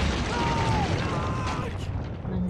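A soldier shouting "Medic!" about half a second in, over a heavy low rumble of artillery shelling in a war film's sound mix.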